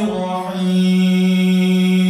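A man's voice reciting the Quran in a melodic chant, holding one long steady note.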